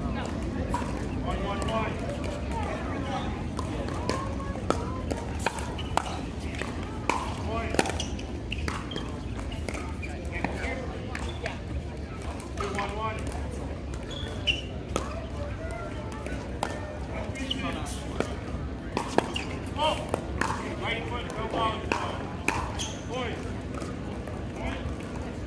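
Sharp pops of pickleball paddles striking the hard plastic ball, with ball bounces, coming at irregular intervals over indistinct voices of players.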